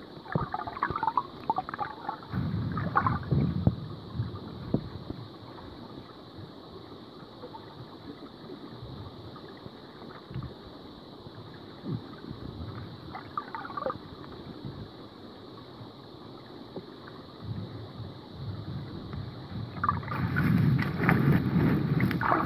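Water heard through a camera held underwater: muffled sloshing and gurgling as bare feet move, over a steady high hiss. The sloshing comes in uneven surges, strongest a couple of seconds in and again louder near the end.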